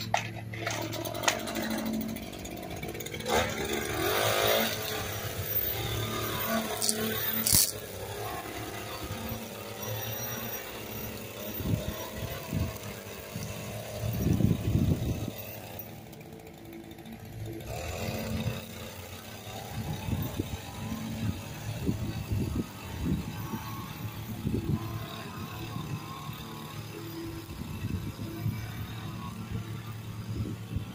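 Echo PE-2620 straight-shaft edger's small two-stroke engine running steadily, with irregular louder bursts of noise.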